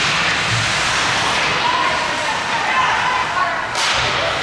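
Ice hockey play on a rink: skates carving and scraping the ice, with indistinct voices of players and spectators, and a short sharp scrape near the end.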